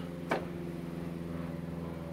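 Steady low mechanical hum of a running motor, with one short, sharp handling sound about a third of a second in as the plastic oil bottle is moved into position over the funnel.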